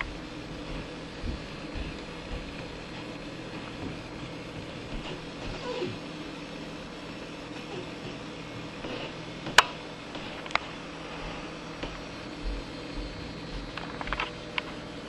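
Faint steady background hum and hiss of the recording, with two sharp clicks a little under ten seconds in.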